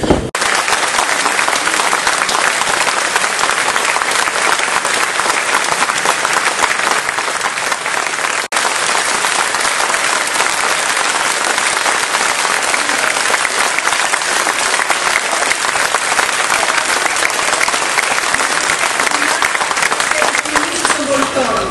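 Large audience applauding steadily as a speaker takes the podium, with a momentary gap about eight and a half seconds in.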